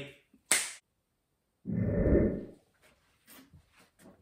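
A sharp, whip-like swish about half a second in, then a louder, low, muffled whoosh lasting just under a second, about two seconds in. These are typical of sound effects laid over a magic-style outfit-change transition.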